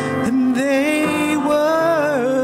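Small mixed church choir of men and women singing a slow hymn, holding long notes with vibrato that slide from one pitch to the next.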